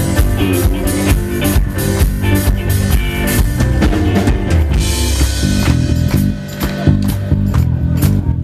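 Live rock band playing an instrumental passage without vocals: drum kit, electric guitars and bass guitar, amplified through a stage PA.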